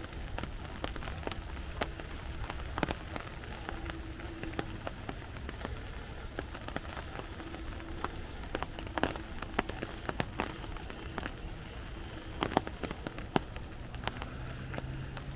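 Steady rain with many irregular sharp taps of heavy drops landing on an umbrella overhead.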